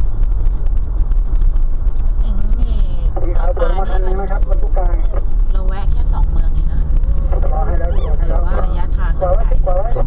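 Steady low rumble of a vehicle's engine and tyres, heard from inside the cab while driving. A man's voice talks over it twice, in the middle and near the end.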